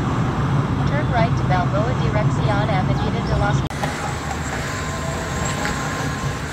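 Road and engine noise inside a moving car's cabin, a steady low hum under a hiss. An edit cut partway through leaves steadier, slightly quieter cabin noise.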